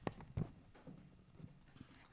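Footsteps of hard-soled shoes on a wooden stage floor: two sharp steps near the start, then faint room tone.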